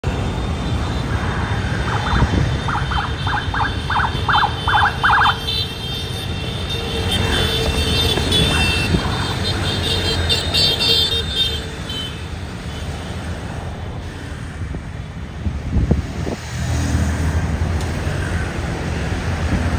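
Road traffic from a long stream of motor scooters and cars passing, engines running in a steady rumble. About two seconds in comes a quick run of about eight short beeps.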